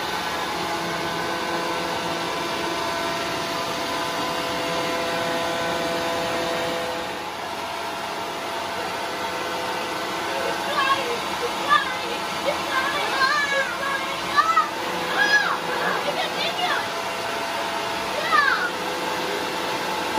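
Electric air blower running steadily with a whining hum, blowing upward through a pipe to hold a ping-pong ball aloft in its airstream. From about halfway on, a child's voice sounds over it.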